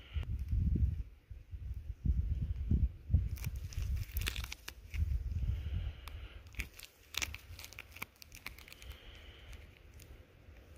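Handling noise from gloved hands turning rock samples: rustling and a run of small sharp clicks in the middle, over low rumbling on the microphone.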